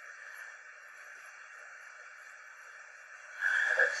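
Steady, faint hiss of room or recording noise with no distinct knocks or cracks. Near the end, a man's voice starts speaking.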